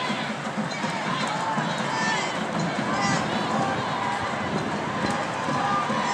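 Crowd of many people talking at once, a dense, steady babble of voices with no single speaker clear.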